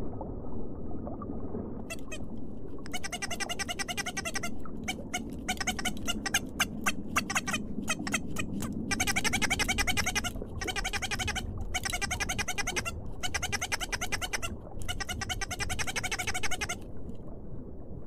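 Duckling peeping in long runs of rapid, high calls, broken by several short pauses and stopping shortly before the end, over a steady low background noise.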